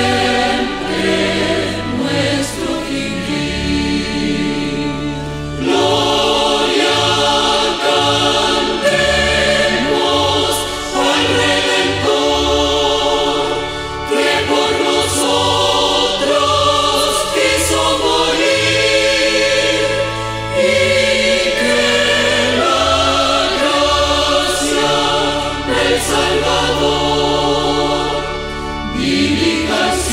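Evangelical Pentecostal church choir singing a hymn, over accompaniment with held low bass notes that change every second or two.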